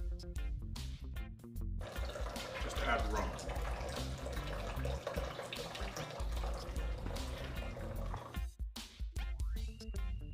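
White rum pouring from a glass bottle into a large bowl of liquid: a steady splashing pour through most of the middle of the stretch, over background music.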